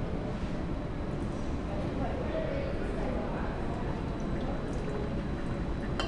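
Liquid poured in a thin stream from one glass beaker into another, running steadily.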